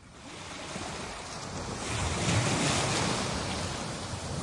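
Recorded ocean waves washing in, a soft rush that swells to its loudest about two and a half seconds in and then eases off: the sound-effect intro of a song, with no music playing yet.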